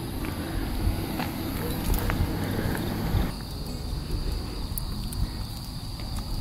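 Night insects trilling in one steady, thin high tone, over a low rumble and a few faint scattered clicks.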